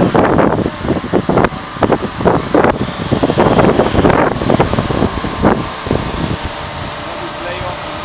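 A person's voice over steady background noise, dying away in the last couple of seconds.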